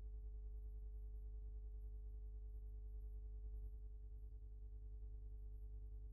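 A faint, steady low electrical hum with a few fainter steady tones above it, unchanging throughout and with no other sound.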